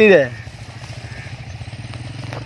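An engine running steadily in the background with a low, even hum, under the last syllable of a spoken word at the start.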